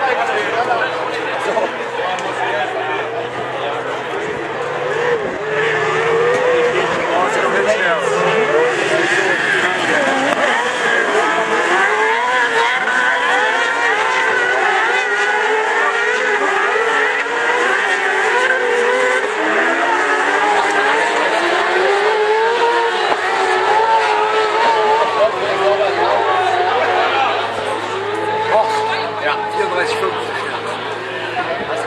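A pack of crosscart racing engines, up to 600 cc, running around a dirt track. Several engine notes overlap and rise and fall as the carts accelerate and lift off through the corners, getting louder a few seconds in.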